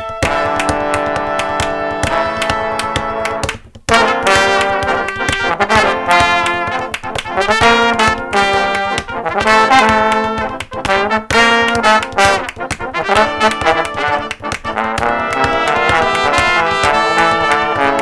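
A multitracked brass section of horns playing an unaccompanied arrangement with no rhythm section: sustained chords for the first few seconds, a brief break just before four seconds in, then a busier passage of short, detached notes.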